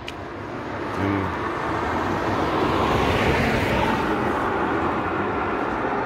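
A vehicle passing on a wet road: the tyre hiss builds over the first couple of seconds, is loudest about three seconds in, and stays strong to the end.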